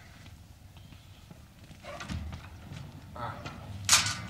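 Footsteps of hard-soled shoes on pavement, starting about two seconds in, with a sharp clack near the end as the loudest sound.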